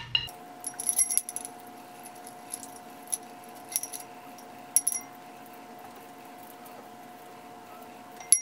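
Metal horse bit clinking as its rings and jointed mouthpiece are handled and scrubbed clean: a quick run of light clinks in the first second or so, then a few single clinks up to about halfway, over a faint steady hum.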